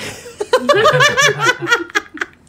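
A person laughing hard, a quick run of high-pitched bursts starting about half a second in.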